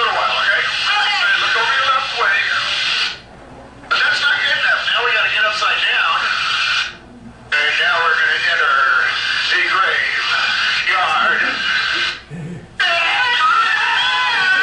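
Soundtrack of a flying video played through room speakers: a voice over music, cutting out abruptly three times for under a second each.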